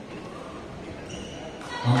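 Court sounds of a badminton doubles rally in a large hall: faint high squeaks from about halfway, as shoes grip the court mat. Near the end a loud voice starts.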